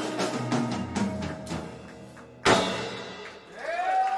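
A live rock band with drum kit, saxophone and electric guitars closes out a song: drum strokes lead into one loud final accented hit about two and a half seconds in, which rings out.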